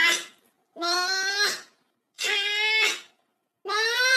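A series of drawn-out meows, each just under a second long, coming about every second and a half with short silent gaps between them.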